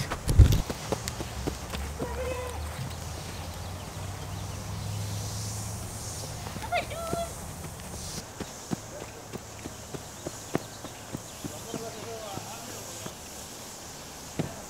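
A loose horse running around a sand arena: a long run of uneven, scattered hoofbeat thuds. A loud low bump comes about half a second in, and a low rumble runs under the first half.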